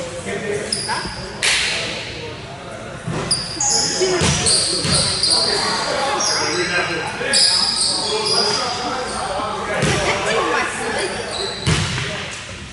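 Basketball game in a large echoing hall: a ball bouncing on the wooden court with scattered thuds, short high squeaks of sneakers on the floor, mostly between about three and eight seconds in, and players' and spectators' voices throughout.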